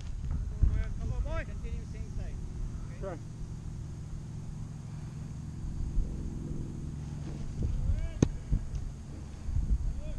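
A steady low engine hum that comes in after about two seconds and fades near the end, under faint voices calling across the field and wind on the microphone.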